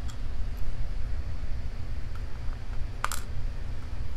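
Small metallic clicks as lock pins are tipped out of a lock cylinder's plug into a plastic pinning tray. There are a couple of faint ticks early and one sharper click about three seconds in, over a steady low rumble.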